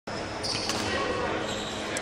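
Footfalls on a wooden indoor court, a few sharp knocks with a brief high squeak about half a second in, echoing in a large hall.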